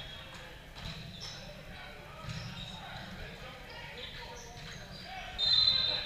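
Volleyball-gym ambience of players' voices and balls bouncing on the hard court, then a short, shrill referee's whistle blast near the end.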